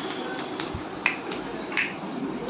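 A handful of light, sharp clicks and taps, about five, with the loudest about a second in: a small plastic cap being handled and knocked against a hard floor.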